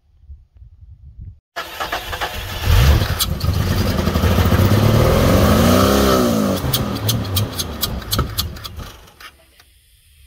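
1992 Jeep Comanche engine cranked and catching on gasoline poured straight into the intake, since it has no working fuel tank. It starts about one and a half seconds in and runs briefly, with one rev that rises and falls, then a string of sharp pops as it dies away near the end.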